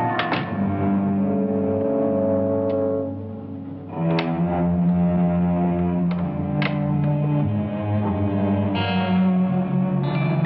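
Film score music: low sustained notes that shift in pitch, punctuated by sharp accents every second or two, dipping quieter about three seconds in before coming back up.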